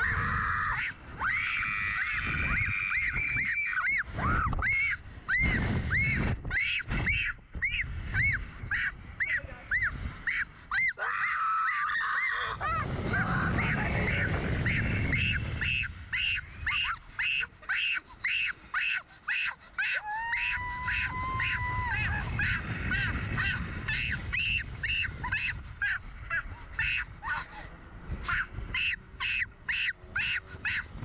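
Two young riders on a Slingshot reverse-bungee ride screaming and yelling, with wind rumbling over the ride's on-board microphone. In the second half the screams turn into a steady run of short shouts, about two a second.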